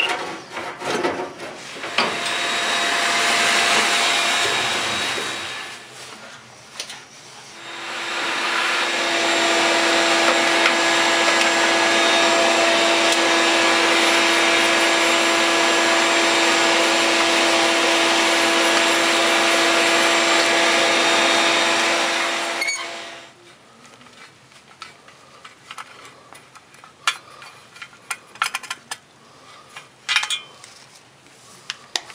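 Vacuum cleaner running in two spells, a short one of about three seconds and then a long one of about fifteen, with a steady motor whine, cleaning dust out of the furnace burner compartment. After it stops, light scattered metal clicks from handling furnace parts.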